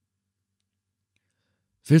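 Silence in a pause of the narration, then a man's reading voice begins just before the end.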